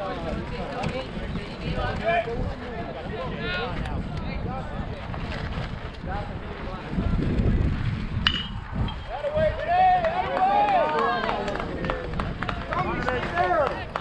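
Bat striking a baseball about eight seconds in, a single sharp crack with a brief ring, followed by players and spectators shouting and cheering; scattered voices before it.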